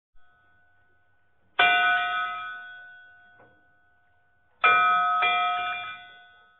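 Bell-like chime struck twice for a logo intro, each strike ringing and fading away over about two seconds; the second is followed by a softer strike about half a second later.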